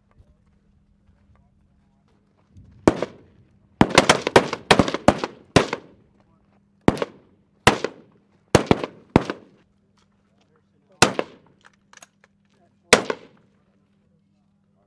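Service rifles fired by several shooters, single shots at an uneven pace: about fifteen sharp cracks starting about three seconds in. A quick run of half a dozen shots comes in the next two seconds, then scattered shots a second or so apart.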